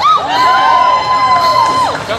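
Audience cheering and whooping after a juggling trick, with one long, high, steady note held over the other voices until near the end.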